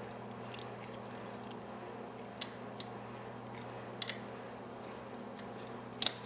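Lock pick working the spool-pinned pin stack of a Brinks brass padlock under light tension: a few faint ticks and two sharp metallic clicks, the first just before halfway and the second about a second and a half later, over a steady low hum.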